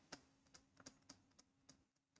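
Faint stylus clicks on a pen tablet during handwriting: about half a dozen soft, irregular taps over near silence.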